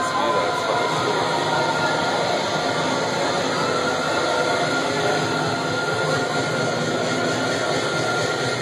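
Loud club dance music from a PA sound system, picked up by a phone microphone as a dense, steady wash with no clear beat, mixed with crowd voices.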